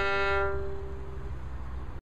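Violin holding the last bowed note of a beginner study. The bow stops about half a second in and the note rings away over the next second, leaving a low background rumble.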